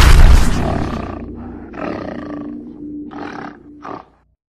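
Logo-sting sound design: a heavy low boom that dies away, then three short animal roars over a low held tone and music.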